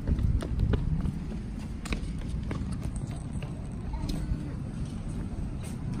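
Stroller wheels rolling over a concrete sidewalk with a steady low rumble, and footsteps and small clicks and knocks scattered throughout.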